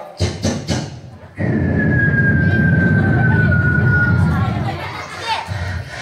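A storyteller making sound effects with his voice through a microphone and PA. Four quick sharp bursts, then a long rumbling noise with a thin whistle slowly falling in pitch above it, imitating aircraft circling overhead and bombs falling on the houses.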